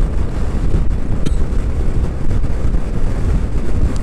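Loud wind noise buffeting a helmet-side-mounted action camera's microphone on a motorcycle at road speed, in gusty wind, a steady rumbling roar with no words.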